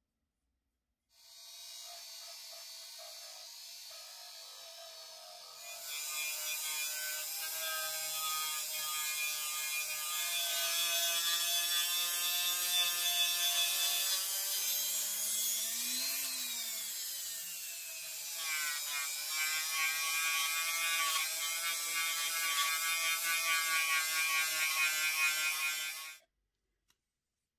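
Small handheld rotary tool running with a steady whine while its felt polishing wheel buffs compound into the painted plastic body of a scale model car. It gets louder about six seconds in, its pitch briefly rises and falls about two-thirds of the way through, and it cuts off suddenly at the end.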